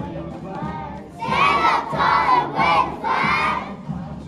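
A group of young children shouting together in unison: four loud chanted calls in a row, starting about a second in.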